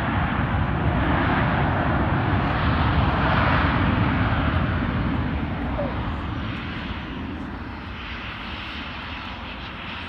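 Jet engines of a Boeing 737-800 (CFM56-7B turbofans) running during the landing rollout. The roar swells to its loudest a few seconds in, then fades.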